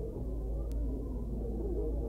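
Indistinct, muffled chatter of many voices over a steady low hum, with the high end cut off as on an old home-movie soundtrack.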